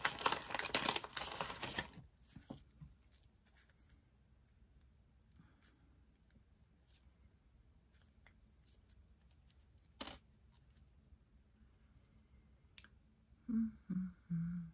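Packaging being torn open and crinkled for about two seconds, typical of the sterile pouch of a PDO thread needle being opened, followed by quiet handling with a few small clicks.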